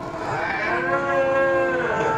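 A single drawn-out vocal call held at a nearly steady pitch for about a second and a half, beginning about half a second in.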